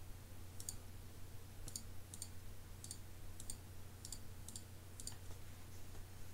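Computer mouse clicking: about eight faint, sharp clicks at an uneven pace, as buttons on an on-screen calculator are clicked, over a low steady hum.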